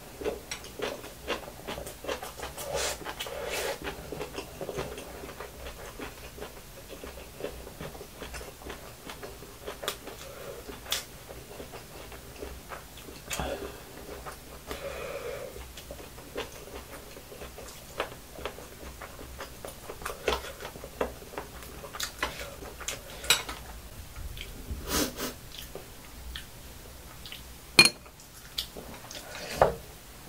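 Close-up chewing of fried rice, with scattered clicks of a metal spoon against a glass bowl and the grill pan; the sharpest clinks come near the end.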